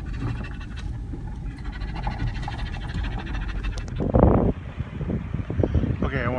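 Low rumble inside a vehicle driving along a gravel road. About four seconds in comes a louder burst of noise, followed by scattered knocks and rustles.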